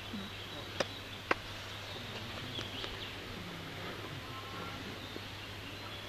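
Two sharp, short clicks about half a second apart, a second or so in, over a steady outdoor background with faint murmuring voices.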